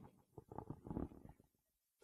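Near silence, with a few faint, low rumbles about half a second to a second in.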